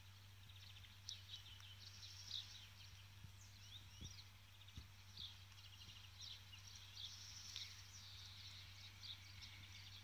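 Quiet outdoor ambience: faint, scattered chirps and twitters of small birds over a steady low hum.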